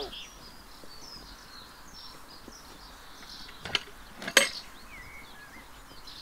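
Songbirds chirping and trilling, with two sharp knocks a little after half-way, about a second apart, the second the louder.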